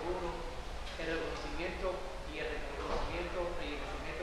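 A man speaking Spanish in conversation, with a steady low hum underneath.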